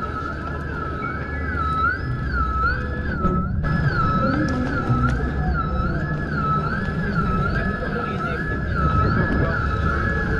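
Electronic emergency-vehicle siren wailing up and down between two pitches, rising and falling about once every three-quarters of a second, steady and unbroken, with low rumbling wind and road noise beneath it. The sound drops out briefly about three and a half seconds in.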